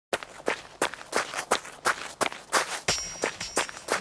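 Running footsteps: a steady run of footfalls, a little under three a second.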